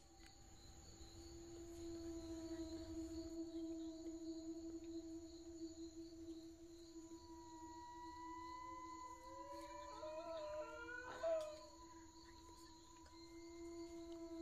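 Quiet eerie ambient drone of long held tones, with slow wailing glides laid over it and a short, louder wavering cry about eleven seconds in.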